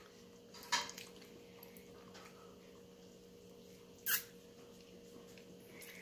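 Quiet room with a steady electrical hum, broken by a short soft sound about a second in and a brief squeak falling in pitch about four seconds in.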